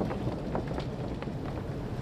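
Ferry ambience: a steady low rumble with wind, and light, regular footsteps on the deck, roughly two or three steps a second.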